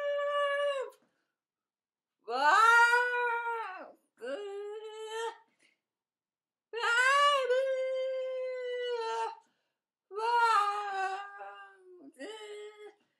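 A woman's voice making long, high, wordless "ah" cries, each held for one to two and a half seconds, about five in a row with short pauses between.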